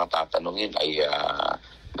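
A man speaking in Filipino mixed with English, drawing out one syllable before a short pause near the end.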